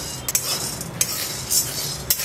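Dry chana dal (split chickpeas) being stirred with a spatula in a metal kadhai while dry-roasting: the dal grains rattle and the spatula scrapes across the pan, with a few sharper clicks against the metal.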